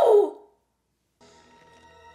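Film soundtrack: a loud, shrill cry falling in pitch dies away about half a second in. After a brief silence, a steady held musical chord comes in.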